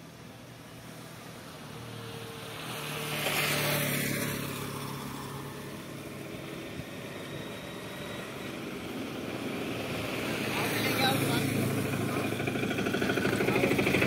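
Roadside traffic: a vehicle passes about three to four seconds in, then an auto rickshaw approaches and pulls up close, its small engine running louder toward the end.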